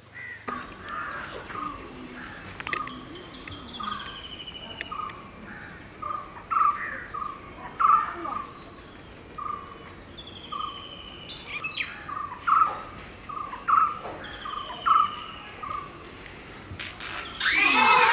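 Birds calling: a short note at one pitch, repeated roughly every half second to second, with thin, fast trills higher up. Near the end a much louder cry with falling pitch breaks in.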